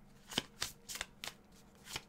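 A deck of divination cards, the reader's timing deck, shuffled by hand: a run of short, irregular card snaps and flicks, about three a second.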